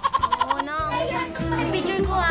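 Young girls' voices, with a quick run of short pulses near the start, over background music with a steady bass beat.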